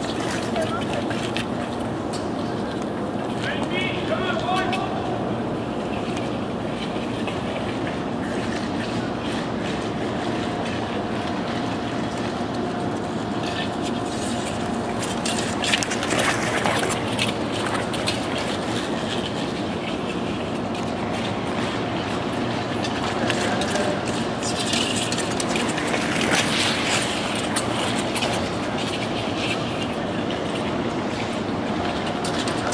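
Steady hum of an indoor ice arena with the hiss and scrape of short-track speed skate blades on the ice. It swells twice in the second half as the line of skaters sweeps past.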